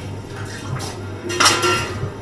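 Stainless-steel bar tools clinking and clattering as a jigger and cocktail shaker tin are handled and set down on the bar. A few light clinks lead to one louder clatter about one and a half seconds in, which rings briefly.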